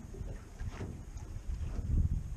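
Wind buffeting an outdoor microphone: a low, uneven rumble that grows louder toward the end.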